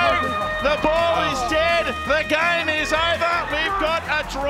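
Excited television match commentary over background music with steady held tones.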